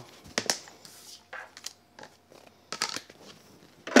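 Scattered light clicks and taps of clear acrylic cutting plates and card being handled and stacked into a die-cutting sandwich, with a louder knock near the end as the stack is set into a Spellbinders Grand Calibur die-cutting machine.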